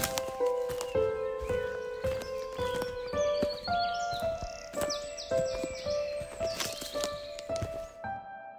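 Electronic trip-hop instrumental: a melody of held notes over a steady beat of percussive hits, with short high sliding sounds in the middle.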